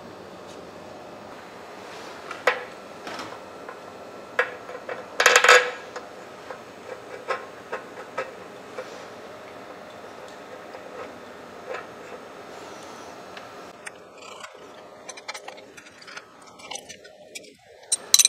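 Scattered metallic clinks and scrapes of steel parts and hand tools being handled, with a louder clatter about five seconds in.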